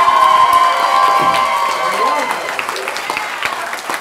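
Live audience and performers applauding, with voices cheering; one high cheer is held for about the first two seconds over the clapping.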